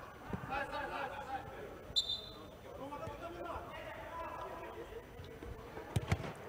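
Faint voices of players calling out on an indoor pitch, with one short, high referee's whistle blast about two seconds in, signalling the restart after a foul. A football is kicked right at the end.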